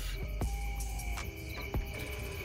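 Quiet night background with a steady high chirring drone, typical of crickets, and a few small clicks, fitting the motorcycle's handlebar switches as the headlight is switched back on.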